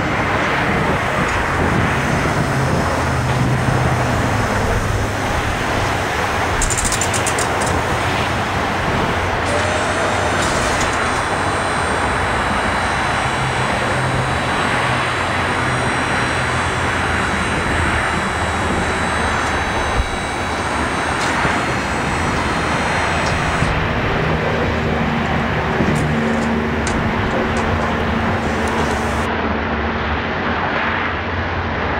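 Steady rush of road traffic, a continuous noise with no breaks.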